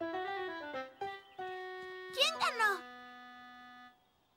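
A short cartoon music cue: a quick run of notes stepping down in pitch, then a held chord that slowly fades away. A voice calls out briefly over the chord.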